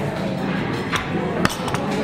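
A wooden serving board with ceramic bowls on it set down onto another wooden board: two sharp knocks, about a second and a second and a half in, over faint background music.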